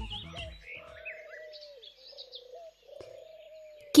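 The tail of a film music cue dies away, leaving faint outdoor ambience: scattered bird chirps over a steady, slightly wavering low tone.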